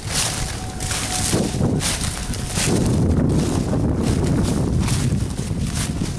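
Wind buffeting the handheld camera's microphone, a loud low rumble that grows stronger from about halfway in, with the footsteps of the person filming on leaf-strewn ground.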